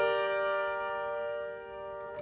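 Upright piano holding a G chord: several notes struck together and left ringing, fading slowly.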